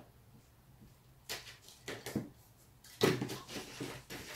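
Handling noise from linen fabric on a table: short rustles and soft knocks as the cloth is smoothed by hand and a ruler and tape measure are moved aside, sparse at first with a louder cluster about three seconds in.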